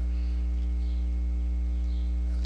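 Steady electrical mains hum on the recording: an even low drone with a row of fainter, evenly spaced overtones above it and a faint hiss.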